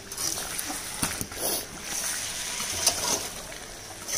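Mutton and potato pieces being stirred and turned with a spatula in a metal kadai, scraping against the pan, over a steady sizzle of frying in oil and spices: the koshano stage of browning the meat in its masala.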